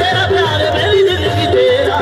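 Qawwali music: a male lead singer sings a wavering, ornamented line over harmonium, with tabla accompaniment.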